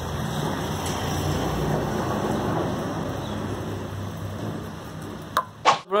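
Steady rain falling, heard as an even hiss with a low rumble that slowly fades; a couple of sharp clicks near the end.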